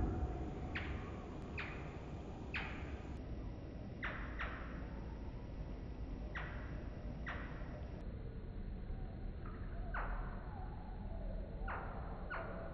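Hummingbird chirping: a string of short chirps, each falling quickly in pitch, about one a second and irregularly spaced, over a steady low background noise.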